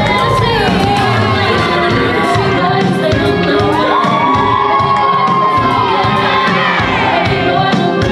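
Audience cheering and screaming over loud dance music, with long high whoops that rise and fall, one held for about a second and a half around the middle.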